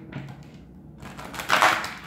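Tarot cards being handled, with one short, loud burst of card rustling near the end as the deck is picked up and riffled.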